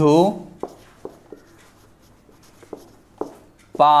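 Marker pen writing on a whiteboard: a run of quiet short taps and scratches as the strokes are drawn, between a man's voice at the start and again near the end.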